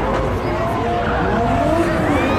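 Two drift cars sliding in tandem, their engines revving up and down, with tyre squeal.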